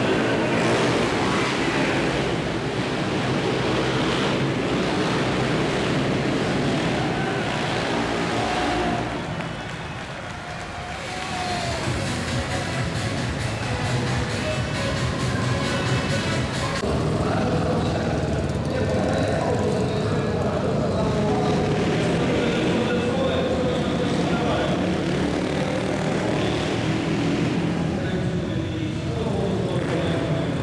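Busy indoor arena ambience: music over the hall loudspeakers mixed with crowd noise, dipping briefly about ten seconds in.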